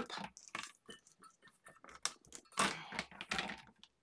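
Handling of a plastic-and-acrylic stamping platform: a run of small plastic clicks and taps as the clear lid is closed and pressed down onto the card, then a couple of louder knocks about two and a half to three and a half seconds in.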